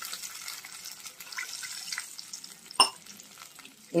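Water heating over the onion-and-chilli tempering in a kadai, with a faint sizzle, while a metal spatula stirs. A few light scrapes and one sharp clink of the spatula against the pan come a little under three seconds in.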